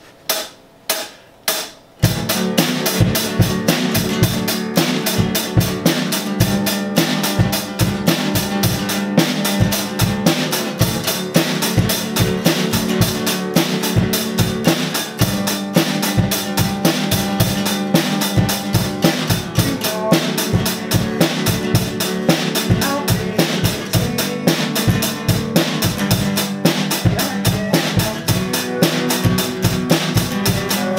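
Four drumstick clicks count in the song, then about two seconds in a drum kit and a strummed acoustic guitar start together, playing a fast, steady rock beat live.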